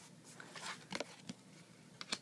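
A few faint, light clicks and taps from hands handling a sleeved trading card.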